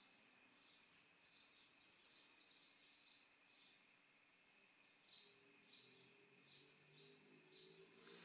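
Near silence, with faint high chirps repeating about two or three times a second over a faint steady high tone.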